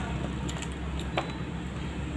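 Water sipped quietly through a plastic drinking straw, with a few faint short ticks, over a steady low rumbling hum.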